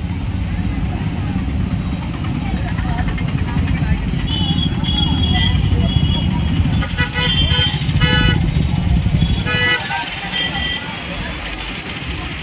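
Street crowd noise over a steady low engine rumble, with vehicle horns tooting several times in short blasts in the second half.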